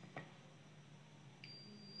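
Digital multimeter's continuity beep: a thin, steady high-pitched tone starting about one and a half seconds in as the probes touch a rectifier diode on a charger's power-supply board, after a light click near the start. The beep means the diode is shorted.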